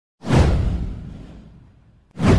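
An intro whoosh sound effect with a deep low boom. It swells in suddenly about a quarter second in, then fades away over about a second and a half.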